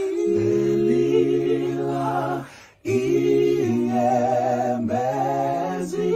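Unaccompanied group of voices singing in harmony, holding long notes that move in steps, with a short break between phrases about halfway through.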